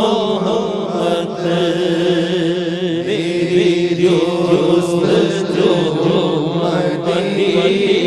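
A man's voice chanting a naat, a devotional Urdu poem, into a microphone: long held lines whose pitch wavers and glides without a break, over a steady low drone.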